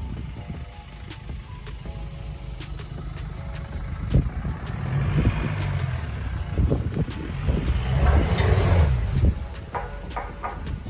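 Lifted Jeep Wrangler's engine running as it drives off across rough grassy ground, a low rumble that gets louder after about four seconds. About eight seconds in there is a brief rushing noise.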